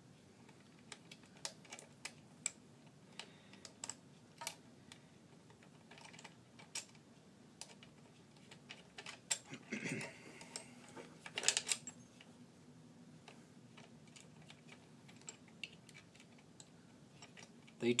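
Faint, irregular small clicks and taps of a hex key and screws handled while the chainsaw's timber spike plate is being fitted, with a louder cluster of clatter about halfway through, over a faint steady hum.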